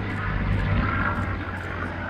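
Piston engine of a P-40 Warhawk in flight, a liquid-cooled V12, giving a steady low drone as the plane rolls through an aerobatic sequence.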